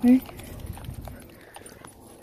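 Footsteps on wet, rippled sand: a few soft, scattered taps.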